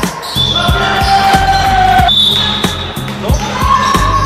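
Background music with a steady drum beat, about three beats a second, under held bass and melody notes.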